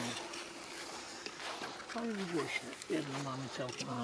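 A low voice murmuring a few indistinct words over quiet outdoor background, with a couple of faint clicks. It follows a firecracker bang, whose echo is still fading at the very start.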